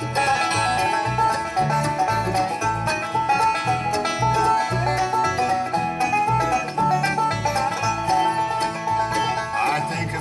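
Bluegrass band playing an instrumental introduction: a banjo picking quick rolls over strummed guitar, with bass notes on a steady beat about twice a second.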